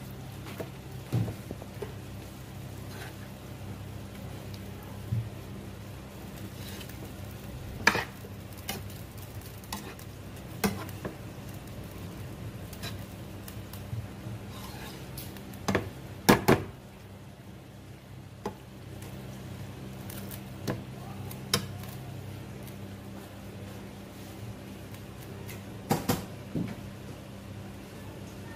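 Metal spatula stirring vegetables in a non-stick frying pan, clinking and scraping against the pan at irregular moments every few seconds, over a steady low hum.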